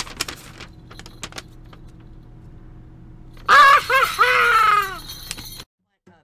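Small bells on a jester's hat jingling faintly at first. About three and a half seconds in, a loud high-pitched voice gives a short cry: two quick notes, then a longer one that falls in pitch. The sound cuts off suddenly about a second later.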